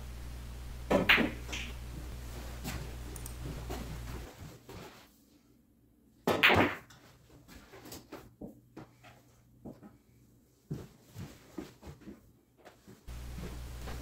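Pool balls clacking on a pool table: a sharp click about a second in, a louder clack about six and a half seconds in, then scattered light knocks.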